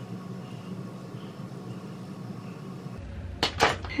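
Steady low room hum, then two or three sharp clicks near the end.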